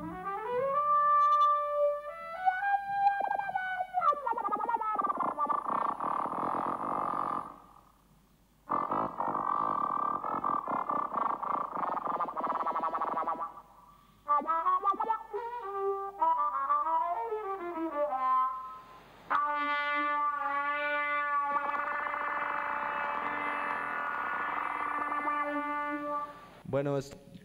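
Trumpet played through an electronic effects processor: gliding, bent notes alternate with dense, layered, effected passages. The sound breaks off briefly about eight seconds in and again about fourteen seconds in.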